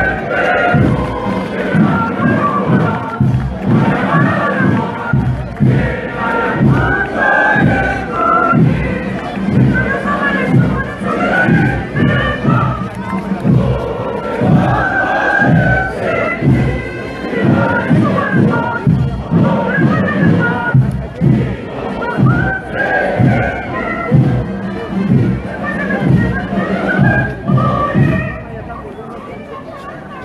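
Many voices singing together over band music, as at a flag raising with the national anthem, getting quieter near the end.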